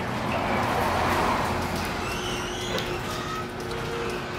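Electric garage door opener running steadily, its motor humming as the sectional garage door rolls down in its tracks.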